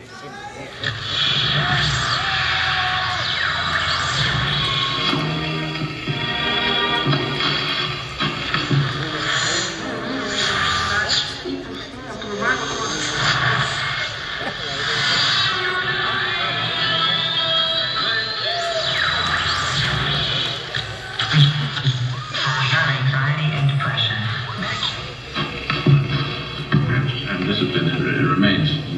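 Live band music heard from the audience in a large concert hall, with voices mixed in and a rising tone around the middle.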